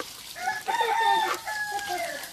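A rooster crowing: one long call that starts about half a second in.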